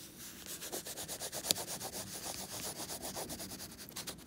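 Wax crayon scribbling on sketchbook paper: quick back-and-forth scratchy strokes, several a second, with one sharper tick about a second and a half in.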